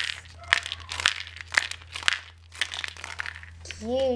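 Aluminium foil wrapping on a handmade toy crinkling as it is handled, in a string of irregular crackles and ticks.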